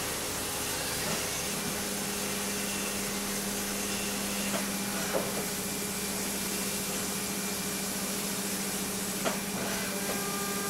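Haas CNC mill machining a billet aluminum engine block under flood coolant: a steady hiss of coolant spray with a low steady hum of the cutting spindle that comes in about a second and a half in. A few sharp ticks sound over it.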